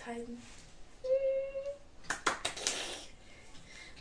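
A woman's wordless vocal sounds: a short held hum about a second in, then a breathy burst with rapid clicks lasting about a second.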